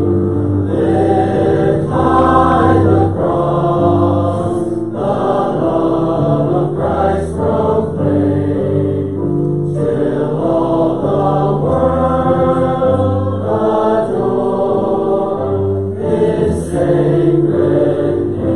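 A congregation singing a hymn together, many voices on long held notes that move step by step, in phrases with short breaks between them.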